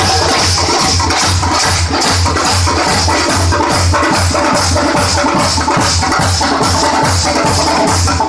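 Loud Theenmar dance drumming: a fast, driving percussion rhythm with a steady booming low beat and dense sharp strikes over it.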